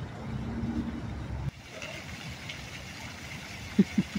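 Low rumble of a running engine that cuts off suddenly about a second and a half in, followed by steady background hiss and a couple of short, loud vocal sounds near the end.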